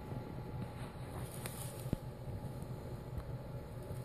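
Quiet, steady low background hum, like a fan or mains equipment running, with a faint click about two seconds in.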